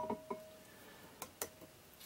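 A steel digital spherometer set down on a fine-ground glass telescope mirror: a sharp clink as it lands, then a few light ticks as it settles, each followed by a faint metallic ring.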